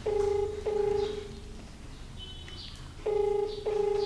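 Ringback tone from a mobile phone on speaker: two double rings, each a pair of short low beeps, about three seconds apart. It means the called number is ringing and has not yet been answered.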